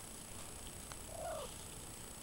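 Domestic cat giving one short, soft mew a little after a second in, over a quiet background.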